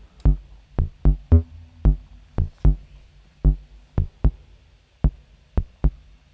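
A sequenced melody of short, low synthesizer notes from a Brenso oscillator, each one a brief blip with a click at its start, in an uneven rhythm of about two notes a second. Each note is shaped by a Falistri envelope in transient mode, which fires only when a gate rises, so every note is short whatever the gate length.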